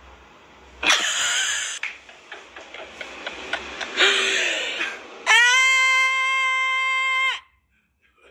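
A woman shrieks and laughs: a loud shriek about a second in, short bursts of laughter, and another shriek at about four seconds. Then a long, steady, high-pitched held cry lasts about two seconds and cuts off suddenly.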